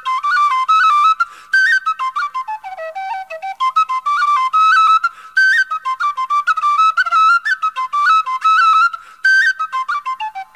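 Solo tin whistle playing an Irish traditional jig: a fast, ornamented single melody line in a high register, with short breaks for breath.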